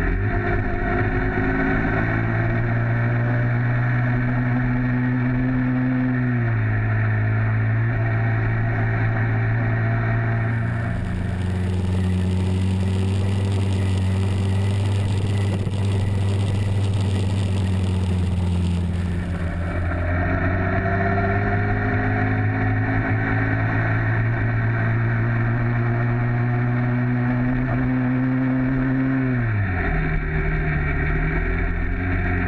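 Two-stroke motorized-bicycle kit engine fitted with a reed valve, running steadily under throttle while riding. Its pitch dips about six seconds in and falls sharply as the throttle is closed near the end, with an added hiss from about ten to twenty seconds in.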